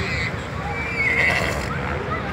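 A horse whinnying, a high wavering call about a second in, over the chatter and bustle of a crowd.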